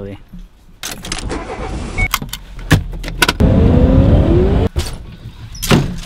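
A run of sharp clicks and knocks, then a car engine starting and revving with a rising pitch for about a second before cutting off suddenly.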